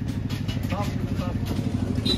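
A motor engine running nearby, a steady low rumble, with faint voices of people around it.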